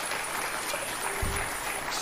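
Studio audience applauding steadily, cutting off abruptly at the very end.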